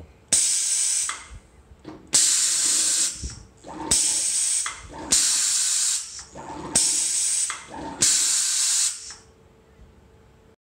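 Pneumatic air ram cycling as its air solenoid valve switches on and off: six sharp hisses of compressed air, each just under a second long, coming every second and a half or so, with faint knocks between them.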